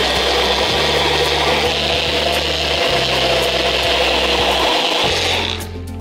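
Personal cup blender's motor running steadily at full speed, its blades whirling leaves and liquid into a green purée, then stopping near the end.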